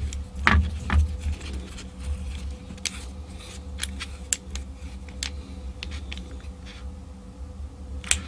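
Scattered small metal clicks and taps as a washer and nut go back onto a starter solenoid's copper terminal bolt and are tightened with pliers.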